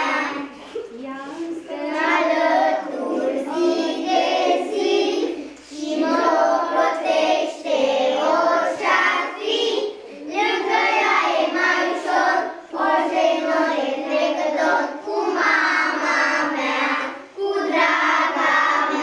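A group of young children singing a song together, in phrases a few seconds long with short pauses for breath between them.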